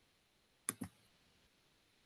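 Two quick clicks from a computer, a fraction of a second apart, about two-thirds of a second in: the slide show being advanced to the next slide.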